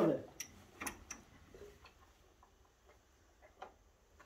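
A few light clicks about half a second apart as a water bucket is handled and set down in straw, then near quiet.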